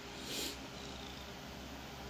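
A cat makes one short sound right at the microphone, about half a second in.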